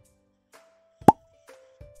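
A cartoon 'plop' sound effect about a second in: a very quick upward swoop in pitch that ends in a pop. Under it, a faint held note of background music.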